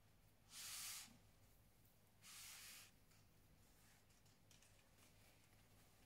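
Near-silent room tone broken by two short, soft swishes, about half a second in and again about two seconds in.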